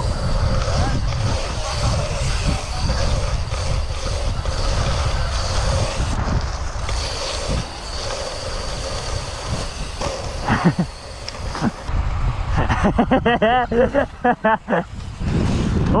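Wind buffeting the camera's microphone as a BMX bike rolls fast along the track, a steady low rumble with tyre noise. From about twelve seconds in, a voice laughs and calls out over it.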